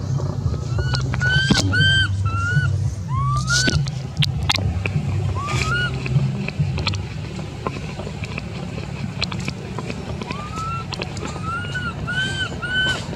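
Thin, high calls rising and falling in pitch, in runs of three or four about a second in and again near the end: the whimpering coo of a young macaque. A steady low rumble runs underneath.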